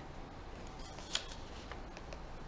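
Faint background noise with a single sharp click a little after one second in, and a few fainter ticks.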